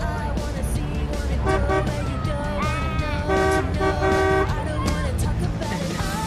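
Car horn honking: a short blast about a second and a half in, then two longer blasts in the middle, over background music.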